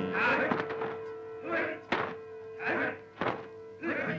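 Film soundtrack music with a long held note, cut through by repeated sharp thuds.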